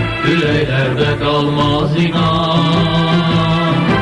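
Music: a male vocal group singing a religious chant, with a steady low drone held under a wavering melody line and no clear words.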